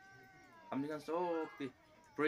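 A man's voice speaking two short phrases, about a second in, after a brief pause. A faint steady high tone runs underneath.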